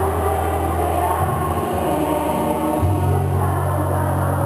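Slow music with long-held bass notes that shift to a new note about a second in and again near three seconds in.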